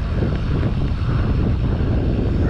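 Wind buffeting the camera microphone while riding a BMX bike along a street: a steady, loud low rumble.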